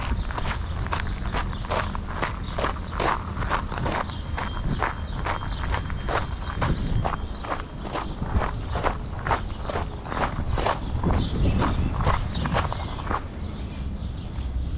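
Footsteps crunching on a gravel path at a steady walking pace, about two steps a second, stopping shortly before the end.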